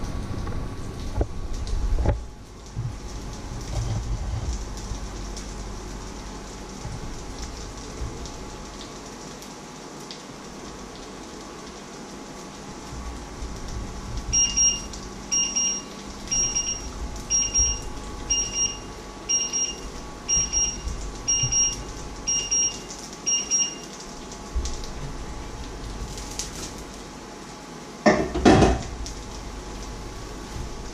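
A kitchen appliance timer beeping ten times, short high beeps about once a second, over a steady low kitchen hum. Near the end a loud clatter of pots at the stove.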